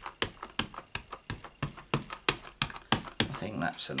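Ink pad in its plastic case tapped again and again onto a rubber stamp on a clear block, inking the stamp up: a steady run of light taps, about three a second.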